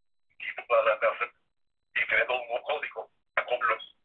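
Speech only: a person talking in short phrases, with the thin, narrow sound of a telephone line.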